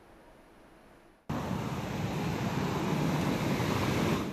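Near silence, then about a second in a steady rushing background noise starts abruptly and holds.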